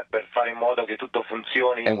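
Speech only: a man talking through a narrow-band radio downlink that cuts off everything above about 4 kHz, so the voice sounds thin.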